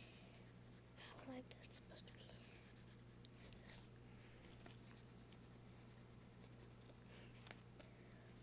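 Faint scratching of a coloured pencil on paper as a drawing is coloured in, with a few sharper strokes about a second or two in.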